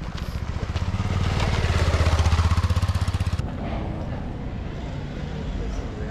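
A motorcycle passing close by, its engine getting louder to a peak about two seconds in, then stopping abruptly a little after three seconds; quieter outdoor background follows.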